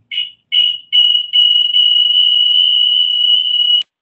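A piercing high-pitched squeal of audio feedback coming through an unmuted meeting participant's line. It starts as a few short chirps, then holds at one steady pitch for nearly three seconds and cuts off suddenly when the line is muted.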